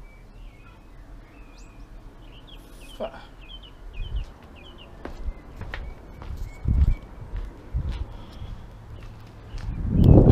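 Small birds chirping, with a quick run of about six chirps near the third second. From about four seconds in there are several low thumps.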